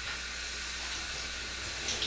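Shower running: a steady hiss of water spray falling in a small tiled shower.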